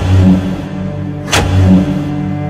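Dramatic film score: a sustained low drone with two heavy booming hits, one at the start and another about a second and a half later.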